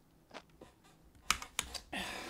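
A few sharp clicks of computer keys, faint at first, then three louder ones close together in the second second.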